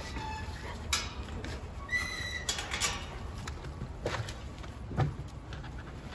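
Wire-mesh kennel gate clanking as it is opened, with a short high squeak about two seconds in, and a few scattered knocks as a steel food bowl is set down.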